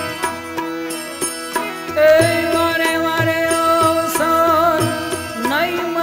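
Gujarati devotional bhajan music: a hand drum keeps a steady beat under violin and keyboard. About two seconds in, a louder held melody line with wavering pitch comes in and rises near the end.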